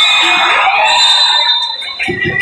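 A long, shrill whistle blast held for about a second and a half over shouting spectators, then cut off.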